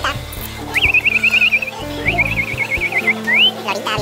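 Amazon parrot whistling: two warbling trills, each about a second long, then a short rising whistle, over background music.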